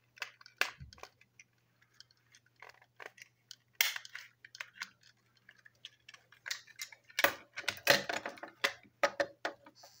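Clicks and clatters of small plastic toy train parts being handled and pressed together on a tabletop, thickest about seven to nine seconds in.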